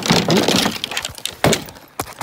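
Golf clubs in a bag clattering and knocking together as the bag is handled, with a sharp knock about a second and a half in and another near the end.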